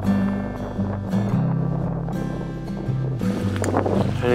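Background music with held low notes that change every second or so.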